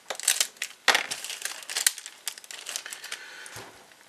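Clear plastic kit bag crinkling as a sprue of plastic model parts is pulled out of it: irregular crackles, busiest in the first two seconds and thinning out later.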